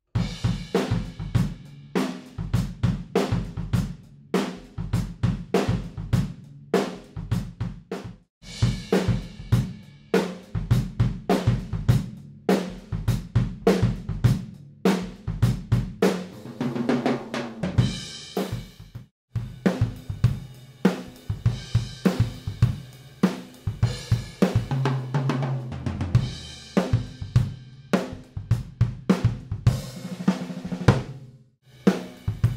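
Drum kit played in a steady groove: kick, snare, hi-hat and cymbals, heard through a pair of ribbon microphones mixed with the close mics, switching between Blumlein and ORTF placement. The playing breaks off briefly about 8 and 19 seconds in.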